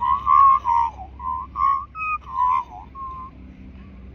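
A person whistling a short tune: about nine quick clear notes close together in pitch, ending a little after three seconds.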